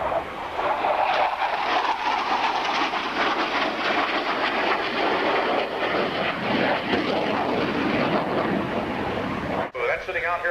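A CF-101 Voodoo's twin J57 turbojets making loud, crackling jet noise as the fighter banks through a low pass. The noise swells just after the start, holds steady, and cuts off suddenly for a moment near the end.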